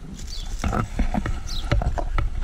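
Leaves and twigs rustling and brushing against the camera microphone as it is pushed through a bush, heard as a low rumble with many irregular crackles and knocks. A bird gives a short, high, descending call twice.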